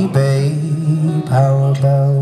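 A male voice singing a long held note on the word "baby" over a strummed acoustic guitar; a fresh strum comes about a second and a quarter in, under a second held note.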